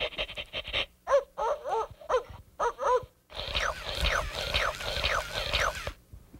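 Plush toy puppy making recorded dog sounds: a short buzzy rattle, a few short yips, then a quick run of falling whines, about two a second.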